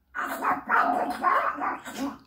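A squawky, garbled Donald Duck–style cartoon duck voice in a few quick bursts.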